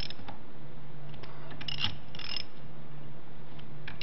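Ratchet wrench with a hex bit clicking in several short bursts as it turns socket-head locking screws a quarter turn at a time, snugging them down on a keyless locking assembly.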